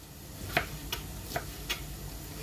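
A few light, sharp clicks or taps, about four in just over a second and unevenly spaced, over a faint steady low hum.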